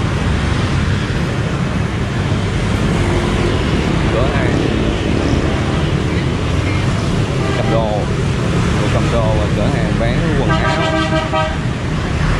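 Busy city street traffic, mostly motorbikes, passing in a steady rumble, with a vehicle horn honking once for a little over a second near the end.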